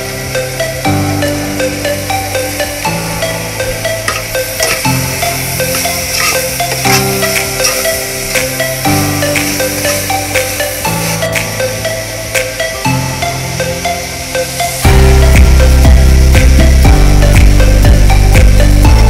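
Background music with held chords that change about every two seconds over a steady beat; about fifteen seconds in a heavy bass comes in and the music gets louder.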